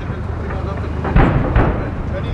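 Steady low rumble with a sharp distant blast a little over a second in, from explosions on a live-fire range.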